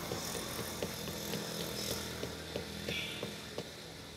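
Light, sharp knife strokes on a palmyra palm's flower stalk at the crown, about three clicks a second, over a steady low hum.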